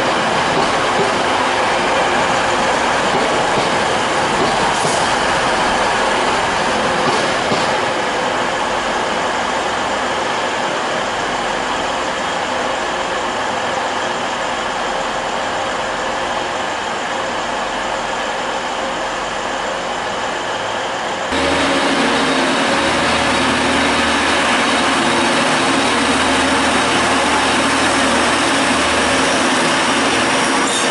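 TransPennine Express diesel multiple units running through the station. First a unit rumbles along the platform with wheel-on-rail noise. About two-thirds of the way in, the sound cuts abruptly to a second train, whose diesel engines give a steady low drone as it moves slowly past.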